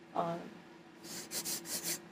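Fabric rustling: a fleece blanket rubbing as she shifts, about four or five short rasping strokes in the second half.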